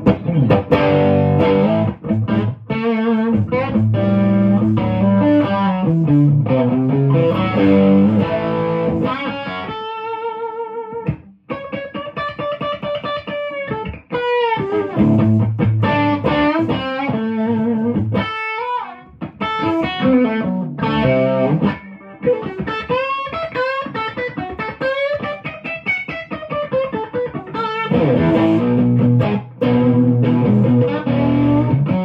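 Gibson Les Paul Special electric guitar played through an amplifier on its bridge P-90 pickup alone: a mix of chords and single-note lines, with bent notes and wide vibrato about ten seconds in.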